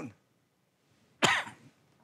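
A man gives a single short cough just over a second in.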